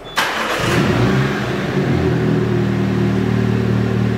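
2018 MINI John Cooper Works Convertible's 2.0-litre turbocharged inline-four starting: a brief burst as it cranks and catches, then a steady idle.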